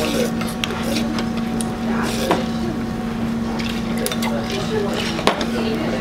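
Noodles being eaten at a restaurant table: scattered clicks of a spoon and chopsticks against ceramic bowls, over background chatter and a steady low hum.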